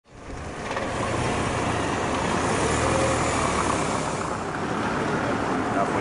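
Steady outdoor rumble of engine-type noise, fading in from silence in the first second.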